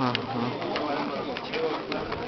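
Low, murmured men's voices exchanging greetings at close range, with a few light clicks.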